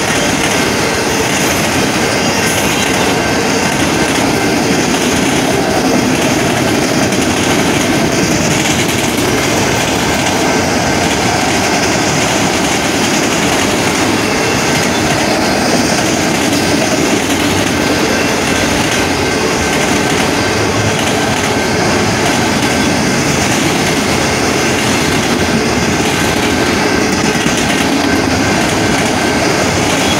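Freight train of autorack cars rolling past at a grade crossing: a loud, steady rumble and clatter of steel wheels on the rails, with a thin steady high tone running underneath.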